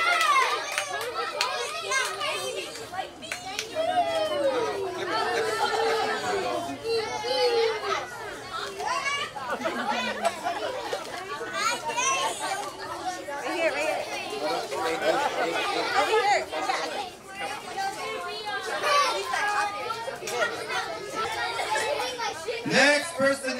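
Background chatter of a crowd of party guests, many overlapping voices with children's voices among them.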